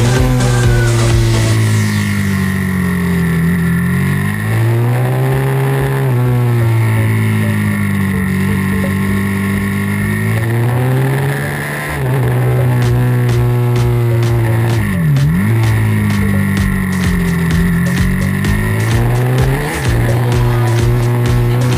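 Supermoto's single-cylinder four-stroke engine heard from onboard, running hard around a track and rising and falling in pitch several times as it accelerates and eases off through the corners. There is a sharp dip and quick recovery in revs about fifteen seconds in.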